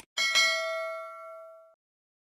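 Notification-bell sound effect for a subscribe animation: a short click, then a bright bell ding struck twice in quick succession that rings out for about a second and a half and then cuts off.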